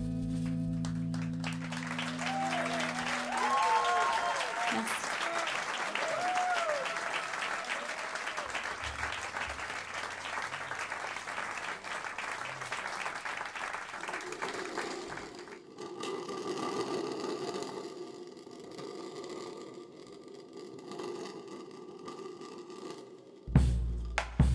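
Concert audience applauding and cheering as a song ends, over the last chord dying away in the first few seconds. The applause fades about fifteen seconds in, leaving quieter stage sounds, and near the end a few loud strikes on a large drum played with sticks start the next piece.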